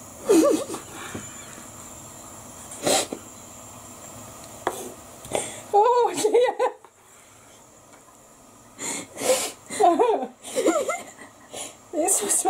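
Bursts of laughter without words, a few seconds apart, with a couple of sharp knocks of a knife against a chopping board as raw chicken is sliced.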